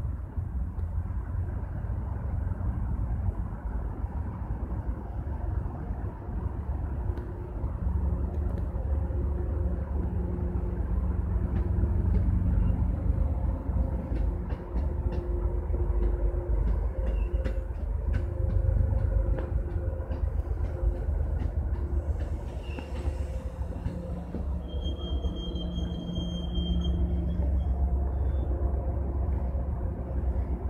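Bilevel commuter train running past at close range: a steady low rumble of engine and wheels on the rails, with a brief high-pitched squeal near the end.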